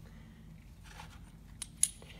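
Faint room tone, then two or three short, sharp clicks near the end, the last one the loudest: small metal tool parts being handled.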